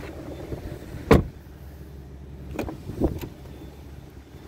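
A 2014 Jeep Cherokee's door slammed shut about a second in, followed by a few lighter clicks and knocks, as of a door latch and handle being worked.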